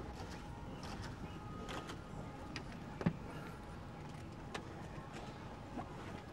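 Busy airport terminal ambience: a steady background hubbub with scattered short clicks and knocks, the sharpest and loudest about three seconds in.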